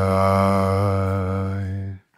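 AI-generated sung vocal from Audimee holding one long, low note with a slight vibrato. It cuts off abruptly near the end as playback stops.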